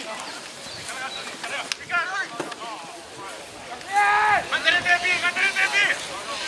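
Voices shouting calls on a rugby field: a few short shouts, then a louder, longer run of shouting from about four seconds in.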